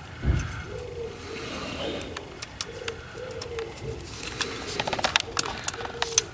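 A pigeon cooing repeatedly in the background, with a low bump just after the start and a cluster of small sharp clicks near the end from a plastic electrical connector being handled.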